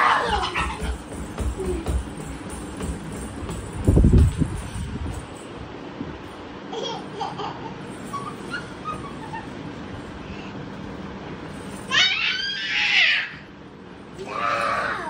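Small children playing on a bed: a dull thump about four seconds in, and a child's high squealing laughter near the end.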